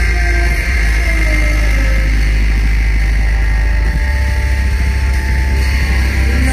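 Loud live industrial metal from a band with bass guitar, drums and an electronic rig, over a heavy, steady low end.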